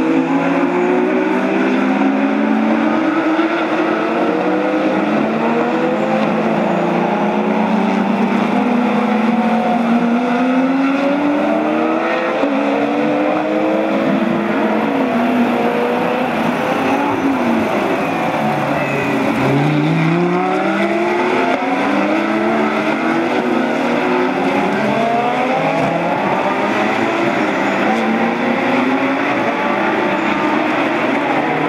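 A pack of GT race cars, Lamborghini and Porsche among them, running through corners, many engines overlapping, each note rising and falling as the drivers brake, downshift and accelerate. A little past halfway one car passes close, its note dipping low and then climbing again.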